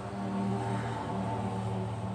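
An engine running steadily: a low, even drone.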